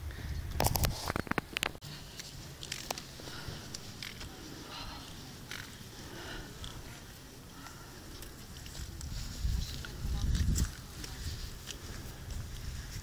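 Wind gusting on the microphone in two low rumbling bursts, near the start and about ten seconds in, with a cluster of handling clicks early on and faint short chirps in between.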